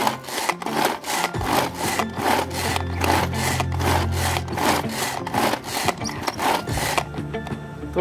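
Pigeon hand-pull vegetable chopper worked by its pull cord stroke after stroke, the plastic gears and steel blades whirring and chopping onion and chili inside in a quick, even rhythm of several strokes a second. The strokes stop about a second before the end.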